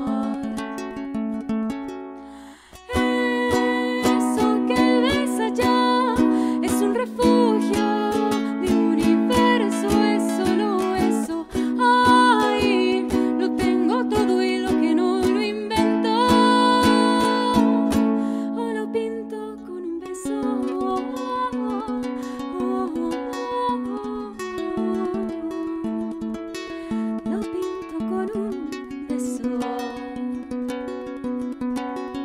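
A woman singing a slow song in Spanish to her own strummed ukulele. The music drops away for a moment about two and a half seconds in, then the strumming and singing pick up again.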